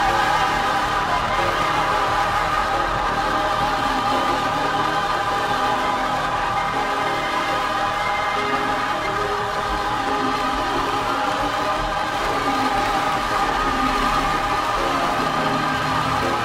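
Gospel mass choir singing long held notes in full chords.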